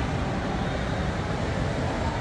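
Steady ambient din of a large indoor shopping-mall atrium: a low rumble with a haze of distant crowd hubbub, without any single clear event.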